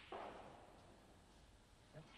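Snooker balls on a match table: a knock just after the start that fades over about half a second, then a faint click near the end, over a quiet arena.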